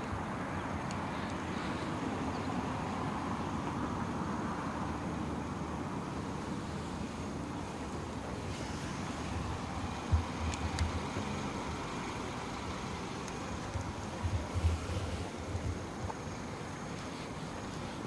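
Steady outdoor background noise, with a few short low thumps about ten seconds in and again near the end.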